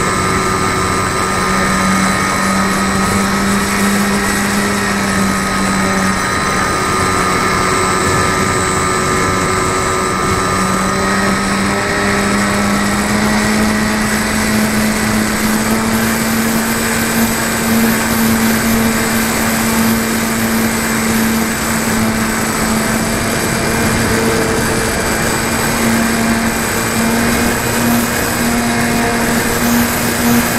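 Motor and propeller of a radio-controlled model airplane, heard from a camera mounted on the plane: a steady buzzing drone over rushing wind. The pitch rises slightly about halfway through.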